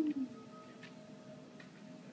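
Film soundtrack music playing from a television: steady held notes, with a short falling note right at the start and a few faint light ticks after it.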